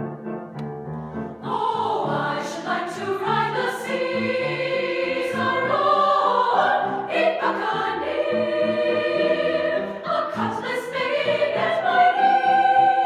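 Women's choir singing in several parts with piano accompaniment. Piano notes come first, and the voices enter together about a second and a half in.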